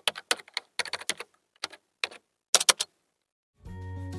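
Typing on a computer keyboard: a run of quick, irregular keystroke clicks for about three seconds. Background music with sustained tones starts near the end.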